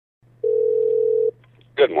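Telephone ringback tone on a phone line: one steady beep just under a second long, over a faint low line hum.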